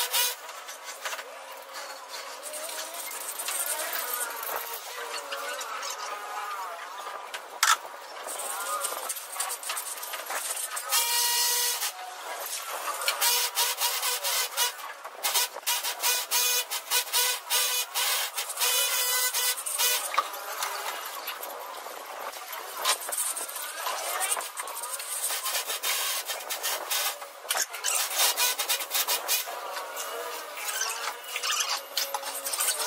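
A hand trowel scraping and rubbing through damp sand-cement screed mix on a concrete floor, in irregular strokes with occasional small knocks.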